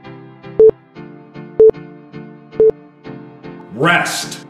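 Three short electronic countdown beeps, one a second and all on the same pitch, over workout background music with a steady beat, marking the last seconds of an exercise interval. Near the end a loud rising whoosh sounds as the interval ends.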